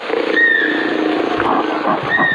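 Produced rainforest soundscape of dense animal calls, with one clear, slightly falling whistled call a little way in.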